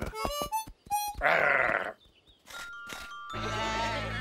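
A cartoon sheep bleating once, loudly, about a second in, after a few short clicks and plucked notes. Music with a steady low note comes in near the end.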